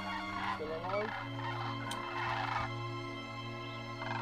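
Background music with steady held notes, over which flying geese call twice in harsh, rasping bursts, the first a little under a second in and the second about two seconds in.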